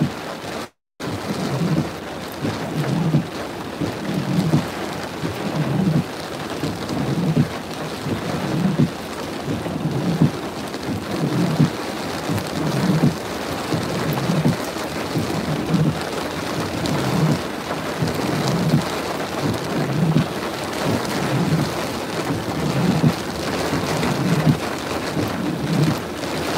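Tropical-storm rain and wave spray lashing a pickup truck, heard from inside the cab: a steady dense rush with a low thump recurring about once a second. The sound cuts out completely for a moment about a second in.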